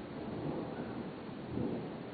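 Rumbling handling noise from a handheld camera being carried between rooms, with a thump about one and a half seconds in.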